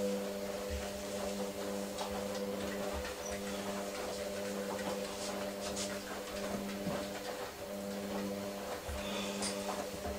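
A steady hum of several held tones runs throughout, with faint rubbing as a cloth is wiped over wall tiles.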